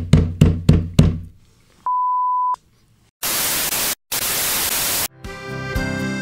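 A quick run of thuds, about four a second, dying away over the first second and a half, then a steady electronic beep near 1 kHz for about half a second. Two bursts of white-noise static follow with a short break between them, and about five seconds in music with plucked, pitched notes starts.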